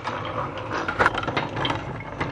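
Plastic toy trucks and building blocks clicking and clattering as they are handled and rolled across a table: irregular small knocks, with a sharper click about halfway through.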